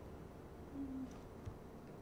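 A few faint computer-keyboard keystrokes as a search word is typed, with a short low hum about a second in that steps slightly down in pitch.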